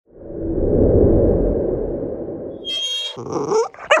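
Logo intro sound effect: a low rumbling swell that fades after about two and a half seconds, then a quick run of short sliding tones and chirps near the end.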